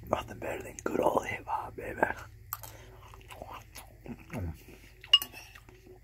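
A man chewing a mouthful of spaghetti with wet mouth sounds, murmuring wordlessly through the food for the first two seconds and giving a falling "mm" a little after four seconds. About five seconds in, a metal spoon clinks once against the ceramic bowl.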